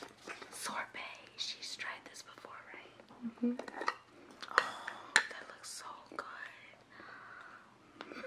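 A young woman whispering. There are a couple of sharp clicks a little past halfway.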